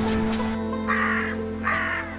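Background music with a long held low note; about a second in, a bird's harsh call sounds twice over it.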